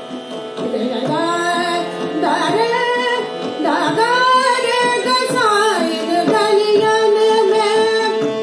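A woman singing a Hindi devotional song (bhajan) with harmonium and tabla accompaniment. Her voice holds long notes and slides between them over the harmonium's steady sustained notes.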